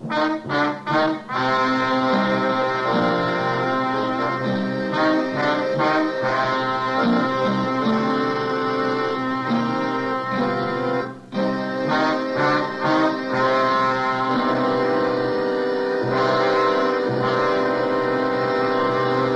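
Orchestral radio-drama music cue led by brass: a few short chord stabs at the start, then a sustained melody, broken by a brief pause about eleven seconds in.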